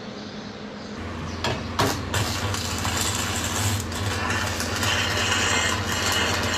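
Industrial workshop noise: a steady low hum with knocks and clatter on top, starting about a second in.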